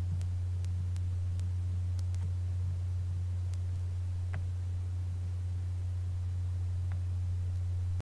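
A steady low electrical hum from the recording setup, with a few faint scattered clicks.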